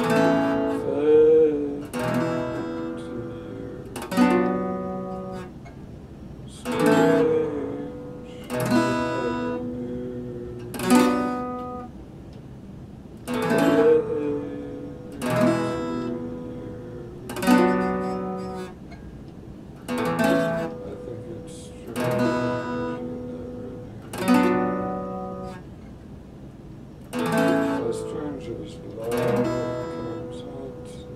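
Acoustic guitar played slowly, a chord strummed about every two seconds and left to ring out and fade before the next.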